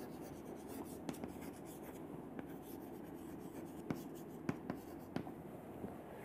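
Chalk writing on a chalkboard: faint scratching of chalk strokes with several short sharp taps, the clearest about a second in and a cluster around four to five seconds in.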